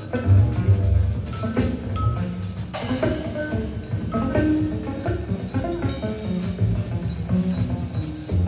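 Live free jazz trio of electric guitar, electric double bass and drums playing a dense, restless stretch of short scattered notes over busy drum and cymbal strokes, with heavy low bass notes early on.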